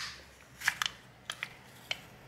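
A handful of short, sharp, irregular clicks and crackles as a thin metal pry tool works along the seam of a Moto G 5G Plus's glued plastic back cover, the heat-softened adhesive letting go.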